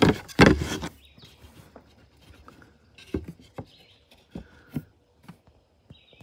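Handling noise from a camera being moved over a ballistic gel block: a loud rubbing, knocking burst in the first second, then a few soft clicks and knocks. Faint bird calls sound in the background.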